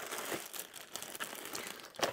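Paper and cardboard packaging rustling and crinkling as it is handled and pulled from a box, with a few small ticks.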